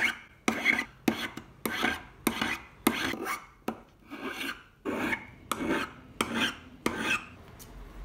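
Flat hand file rasping across a silver ferrule held on a mandrel, in brisk, even strokes about every half second, shaping the freshly soldered ferrule.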